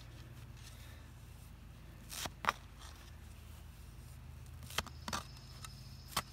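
Long-handled edger blade cutting down into turf and soil at a bed's edge: four short crunching cuts in two pairs, about two seconds in and again near five seconds, as a flat spot is cut out to round the edge. A low steady hum runs underneath.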